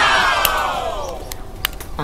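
Hard plastic parts of a miniature air-conditioner model creaking in one long squeal that falls in pitch as they are worked apart by hand, then a couple of sharp plastic clicks.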